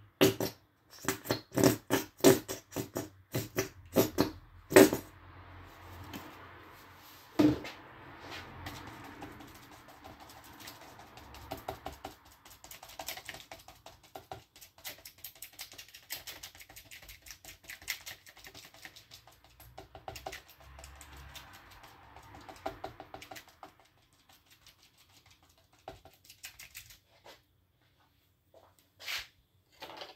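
Stiff round brush dabbing and scrubbing acrylic paint on paper: a run of loud, sharp dabs in the first five seconds, then a softer, continuous scratchy stippling that thins out to a few taps in the last six seconds.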